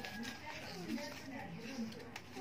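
Quiet, indistinct talking in a child's voice, no clear words.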